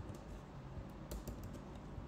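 Typing on a computer keyboard: a few scattered, light keystrokes over a low steady hum.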